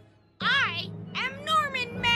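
Cartoon boy's high-pitched voice making wordless sounds: a short exclamation that falls in pitch about half a second in, then a wavering, laughing cry near the end.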